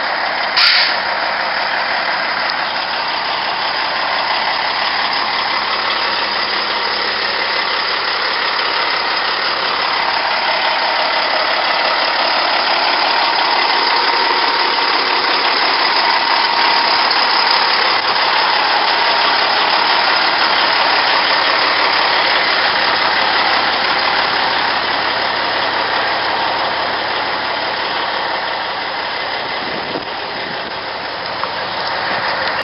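Caterpillar C15 inline-six diesel of a 2002 Peterbilt 379 semi tractor idling steadily, a little louder through the middle stretch. A short sharp click about a second in.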